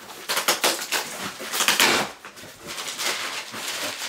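A large cardboard shipping box being opened by hand: a quick run of crackles and clicks in the first second, a longer ripping sound about halfway through, then rustling of the packaging.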